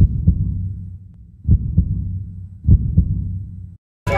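A heartbeat sound effect: three double thumps, one pair about every second and a quarter, over a low hum that cuts off just before the end.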